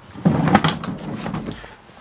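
Muffled knocks and rustling close to the microphone, loudest in the first second and then fading: a person moving right up to the camera and leaning over it, with clothing rubbing and light bumps.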